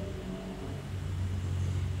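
A low, steady hum, a little louder toward the end.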